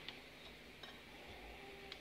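Faint, light clicks and taps, three in all, from hands handling a digital kitchen scale.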